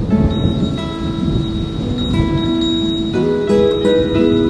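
Soft instrumental background music with held notes changing every second or so, over a low rumbling haze.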